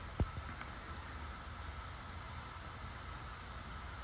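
Quiet room tone: a low steady hum with a faint thin high tone, and one short low thump just after the start.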